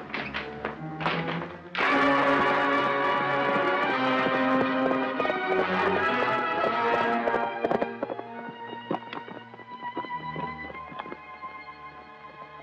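Orchestral film score that comes in loudly about two seconds in and eases off after about eight seconds, over a run of sharp taps from a ridden horse's hoofbeats.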